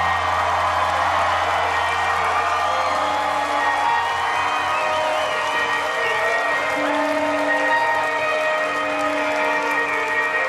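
A live rock band holding sustained chords, with a deep bass note that fades out about four seconds in, under a cheering crowd.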